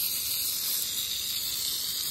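Garden hose with a brass spray nozzle shooting a jet of water onto a horse's coat: a steady hiss.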